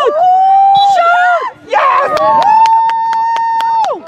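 A spectator's voice in long, loud, drawn-out yells without words: one held for about the first second and a half, and after a short break another held steady from about two seconds in until near the end.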